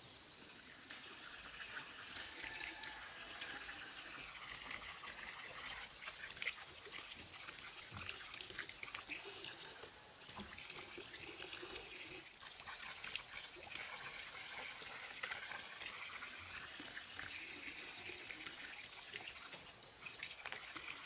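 Forest ambience: insects keep up a steady high-pitched drone, with faint trickling water and scattered light knocks and taps.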